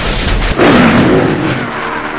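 An added magic-blast sound effect: a sudden loud rush with a wavering low tone starts about half a second in, lasts about a second, then fades, cutting off a low rumble.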